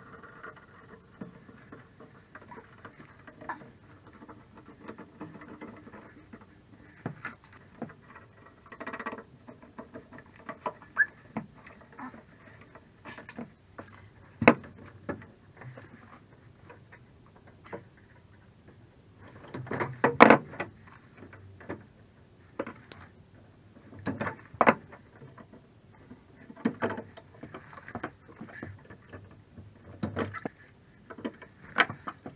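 Sporadic knocks, taps and rustling from handling PEX tubing and fittings against wooden wall framing, with a few louder knocks spread through.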